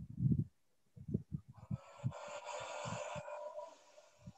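Deep breathing picked up by a video-call microphone: irregular low puffs of breath against the mic, and about a second and a half in, a hissing breath that lasts nearly two seconds.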